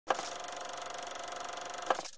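Logo-intro sound effect: a sharp hit, then a steady, rapidly pulsing mechanical buzz with a thin held tone, closed by a second hit near the end.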